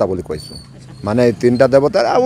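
A man talking in a low voice in two stretches, with a short lull between them. A faint, brief high chirp sounds in the lull.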